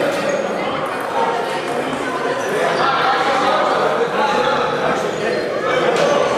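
Table tennis balls clicking irregularly on tables and paddles over continuous indistinct chatter, in a large gym hall.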